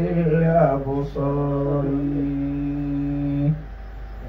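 A man's voice chanting in a drawn-out melodic style. After a short phrase it holds one long steady note for a couple of seconds, which breaks off near the end.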